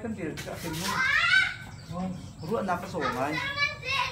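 A man talking, with children's high voices calling and playing in the background.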